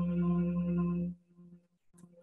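Lambdoma harmonic keyboard holding a steady, pure low tone near 174 Hz, one of the Solfeggio frequencies, with fainter higher related tones layered over it. It cuts off abruptly a little over a second in, leaving only faint soft sounds and a small click near the end.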